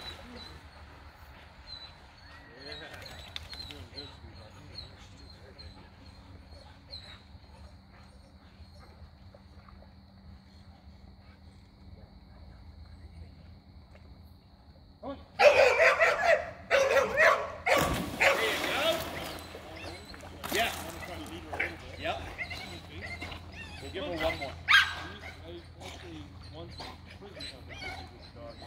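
A dog barking in loud, repeated bursts, starting about halfway through. Before that it is fairly quiet, with a faint steady high tone in the background.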